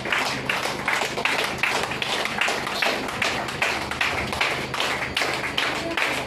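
A group clapping hands in a steady rhythm, about two and a half claps a second, over a low steady hum.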